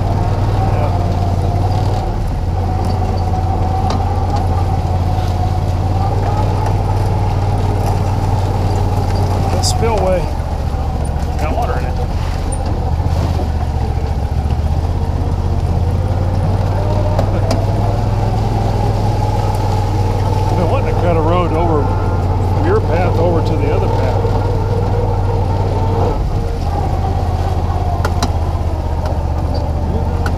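A John Deere Gator utility vehicle's engine running steadily while driving, with a whine that drifts up and down with speed. The engine eases off briefly about ten seconds in.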